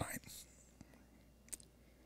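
A quiet pause in a man's speech. His last word trails off at the very start, followed by a soft breath. A single faint click comes about a second and a half in.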